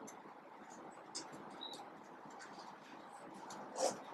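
Felt-tip marker writing capital letters on paper: faint short scratches of the tip, with a brief squeak a little before two seconds in and one louder stroke near the end, over a steady low hiss.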